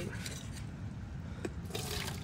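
A metal cooking pot being handled with faint scrapes and a couple of light clicks, then near the end hot slaw and brine start to pour from the pot into a wash pan with a splashing hiss.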